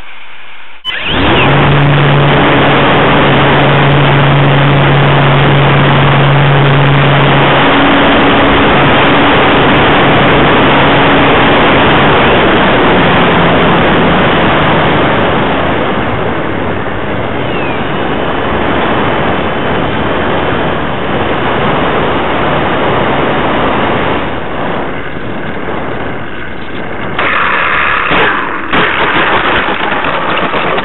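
Steady rush of wind and propeller noise from a brushless electric RC plane, heard through a camera mounted on the plane. It starts suddenly about a second in, with a steady motor hum under it for the first several seconds. It eases off after about fifteen seconds, with a few louder swells near the end.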